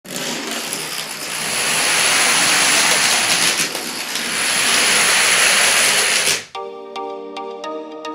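Thousands of small plastic dominoes toppling in a dense, continuous clatter as a large domino field falls row after row. The clatter cuts off abruptly about six and a half seconds in, and background music begins.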